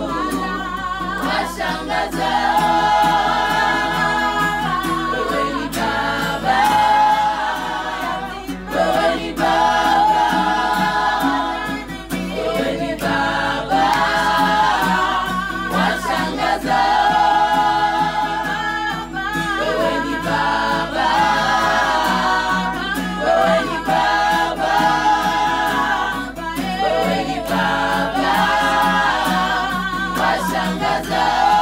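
Women's choir singing a cappella, in phrases of held notes that break off every few seconds.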